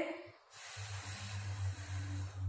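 A person breathing out in one long, steady, breathy hiss, starting about half a second in. It is the Pilates exhale cued by the instructor as she starts lifting her legs.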